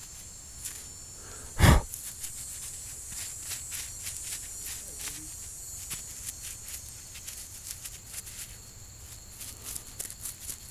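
Handling noise from gloved hands and the camera: one loud knock about two seconds in, then irregular rustles and light clicks. A steady high insect chirring runs behind it.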